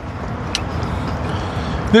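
A car passing close by: a steady rumble of engine and tyre noise that slowly grows louder, with one short click about half a second in.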